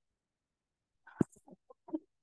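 About a second of silence, then a sharp click and a few short, faint voice sounds.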